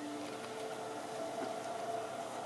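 Slow background music made of long held notes that change pitch every second or so.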